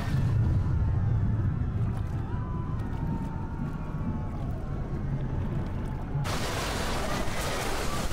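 Muffled underwater rumble of water, low and dull with the treble gone. About six seconds in it cuts suddenly to loud splashing and churning water at the surface.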